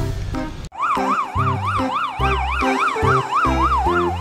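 Ambulance siren in a fast yelp, its pitch sweeping up and down about three times a second, starting under a second in, over background music with a steady beat.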